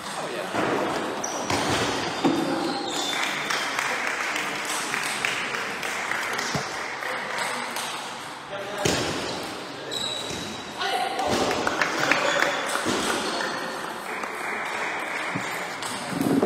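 Table tennis rallies: the ball clicking off the bats and the table in quick succession, echoing in a sports hall. Voices run in the background.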